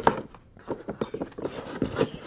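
Molded paper-pulp packaging being handled as a diffuser is worked out of it: a loud click at the start, a brief lull, then an irregular run of small knocks and scrapes.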